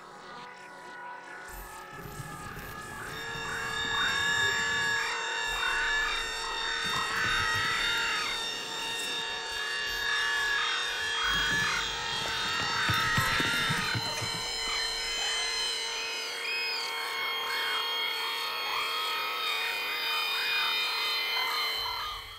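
Electronic music score: sustained droning synth tones layered with warbling, wavering higher sounds. It swells up over the first few seconds, has two low rumbling surges, and eases off over the last several seconds.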